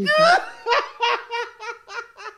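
A man laughing hard: a high squeal at the start, then a run of short breathy ha-ha pulses that slowly fade.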